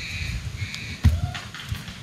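A horse stamping a hoof once on dry dirt, a single dull knock about a second in. Birds call faintly early on, over low outdoor rumble.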